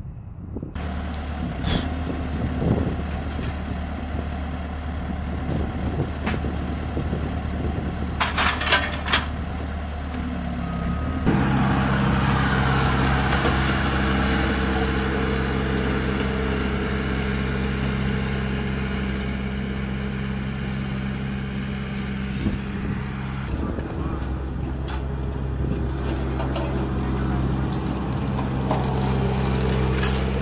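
Diesel engine of a Bobcat skid-steer loader running steadily, coming in suddenly about a third of the way in with a brief rise in pitch. Before it there is a lower, steady mechanical hum with a few sharp knocks.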